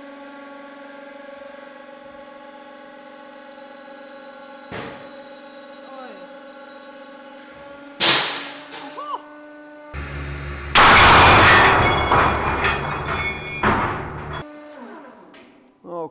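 Hydraulic press running with a steady hum as its ram comes down on a single steel ball bearing. About eight seconds in, the bearing bursts under roughly 880 kg with a sharp bang and ringing as fragments fly. A louder stretch of crashing noise lasting about four seconds follows a couple of seconds later.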